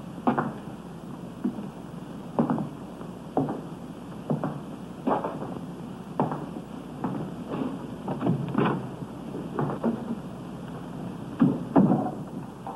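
Slow footsteps on a hard floor: a row of separate soft knocks, roughly one a second, over the steady hiss of an old soundtrack.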